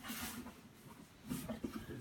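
A brief soft rustle of the clear plastic bag holding a dog's cremated ashes as it is handled in a wooden box, followed by faint low handling sounds.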